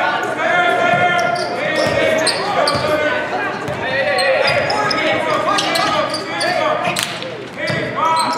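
A basketball bouncing on a hardwood gym floor as it is dribbled, with sharp knocks scattered through and one louder knock about seven seconds in. Many voices of players and spectators call out at once, echoing in the gym.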